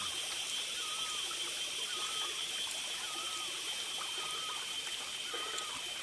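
Small forest stream trickling, with a steady high-pitched hum above it. A short call repeats about once a second throughout.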